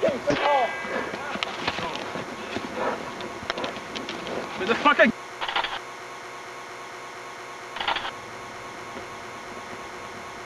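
Shouting and handling knocks as a handheld camera is jostled and swung toward the ground, cut off suddenly about five seconds in. After that a steady low hum of blank recording, broken by two short bursts of static.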